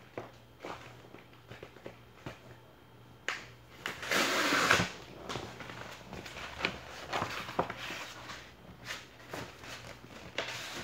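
A cardboard mailer envelope being handled and torn open: scattered rustles and small clicks, with one loud tearing rip lasting under a second about four seconds in as its tear strip is pulled off.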